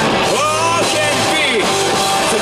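Young rock band playing live: electric guitars, bass and drums, with a lead line bending up and down in pitch through the middle.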